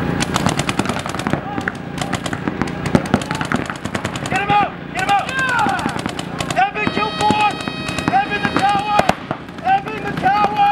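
Paintball markers firing in rapid strings of shots, densest in the first few seconds, with short shouted calls from players breaking in from about four seconds on.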